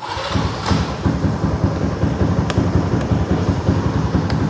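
Yamaha Exciter four-speed's single-cylinder engine starting and settling into a steady idle with a rapid, even pulse.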